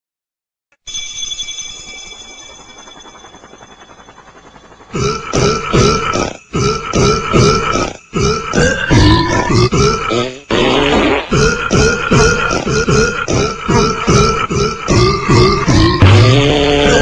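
Music: a held, ringing chord starts about a second in and fades, then a rhythmic tune with a steady beat comes in about five seconds in.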